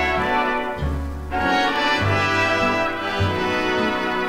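Orchestral introduction from a 1952 78 rpm record: brass playing sustained chords over a bass line that moves note by note, with a brief thinning of the upper parts about a second in.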